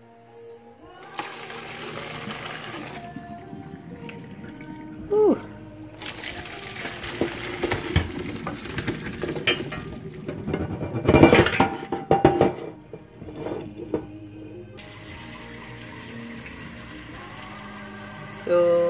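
Hot boiling water poured from a pot through a metal colander into a stainless steel sink, draining off the salty first boil of salt beef and pig's tail; the splashing starts about a second in, is loudest about eleven seconds in and stops near the end. Background music plays throughout.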